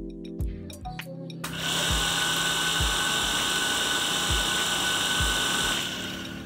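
Shimizu electric jet water pump starting up and running with a steady whir and a thin high whine, beginning about a second and a half in and stopping near the end. It starts without the fan being pushed, a sign that the new capacitor has cured its failure to start.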